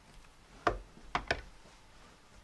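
Three sharp clicks of acrylic cutting plates and a metal die being handled on a manual die-cutting machine: one about halfway into the first second, then two in quick succession a moment later.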